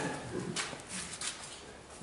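Quiet room tone in a pause between speech, with a few faint clicks about half a second to a second and a half in.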